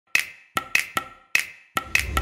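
Percussion strikes with a hard, woody attack and a brief ringing tone, seven in about two seconds in an uneven rhythm, each dying away quickly: the intro pattern of a song before the music comes in.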